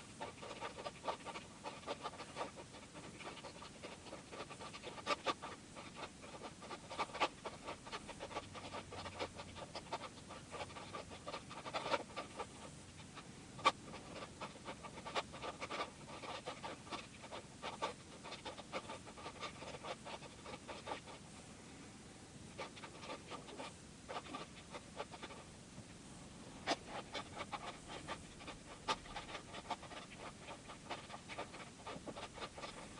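Plastic Megaminx puzzle being turned by hand: a quick, irregular run of clicks and clacks as its faces turn, with a sharper, louder click now and then, over a faint steady hum.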